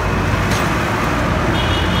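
Street traffic: engines of a pickup truck and motorcycles passing, a steady low engine drone under road noise.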